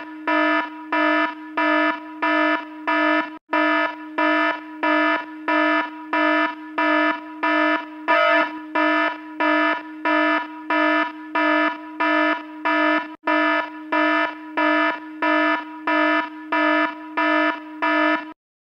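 Electronic alarm beeping steadily, about two buzzy beeps a second on one low tone, with two brief dropouts.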